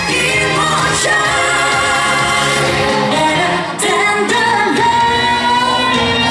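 A pop song with sung vocals, played loud as the music for a dance routine, with a brief dip in loudness a little before four seconds in.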